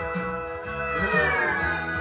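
Williams pedal steel guitar playing a sustained chord that slides smoothly down in pitch about a second in, with bass notes moving underneath.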